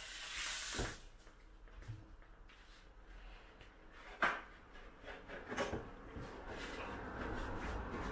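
Tap water running and stopping about a second in, then a few sharp knocks and clicks of kitchen handling, the loudest about four seconds in.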